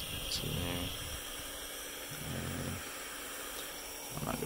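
Butane soldering iron's burner hissing steadily as the iron heats up.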